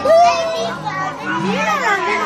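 Young children's voices: high-pitched excited calls and chatter, one call rising and falling in pitch near the end.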